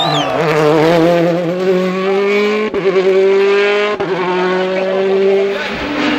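Rally car engine under hard acceleration, its note climbing steadily, with two sudden breaks about two and a half and four seconds in.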